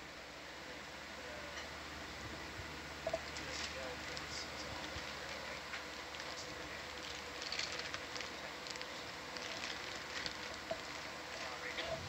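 Low, steady electrical hum of room equipment, with faint indistinct voices and a few small clicks in the background.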